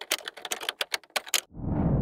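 Typing sound effect: a quick, irregular run of key clicks, about a dozen in a second and a half. The clicks stop and a low rushing swell rises near the end.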